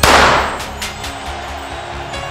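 A starting pistol fires once at the start of a race. It is a sharp, loud crack that rings out and fades over about half a second, with background music continuing underneath.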